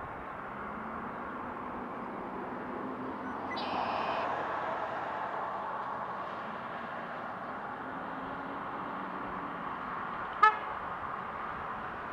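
Road traffic with a large tanker truck driving past, its engine and tyres growing louder about four seconds in. A brief high-pitched tone sounds at the same time, and a short, loud horn toot comes about ten seconds in.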